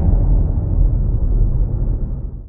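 The low rumble of a cinematic boom sound effect from an intro logo sting, slowly dying away with a fading hiss above it.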